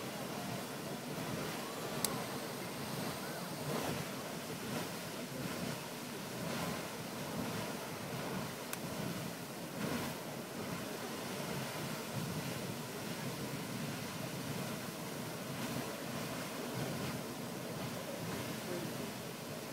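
Grand Geyser, a fountain geyser, erupting: a steady rushing of water jets and falling spray. A single sharp click about two seconds in.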